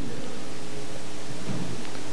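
A steady, even hiss-like rush of noise with no speech, under a faint low hum.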